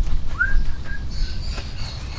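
A bird gives one short call, rising and then holding briefly, about half a second in. Under it runs a steady low rumble and the rubbing of a wet wash cloth on the truck chassis.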